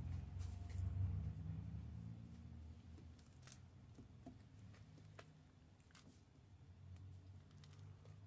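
Faint rustling and a few light scattered ticks of hands smoothing and straightening a cotton macramé cord leaf on a cloth, over a low steady hum.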